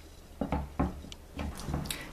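A few soft knocks and rubs from hands handling a stretched canvas on a tabletop.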